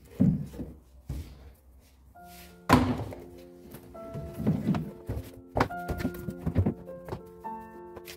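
Shoes being pulled off the shelves of a shoe cabinet and dropped, a series of thuds and knocks, the loudest about three seconds in. Background music with held notes comes in about two seconds in.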